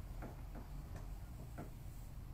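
About four faint, irregularly spaced ticks or taps over a low steady hum.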